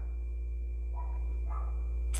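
Pause in speech: steady low hum of room tone, with two faint short sounds about a second in.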